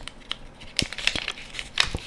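Paper backing of a 120 film roll rustling and crinkling as it is handled and fed toward the take-up spool of a Mamiya 6. A few light clicks from the camera come with it, the sharpest about a second in and again near the end.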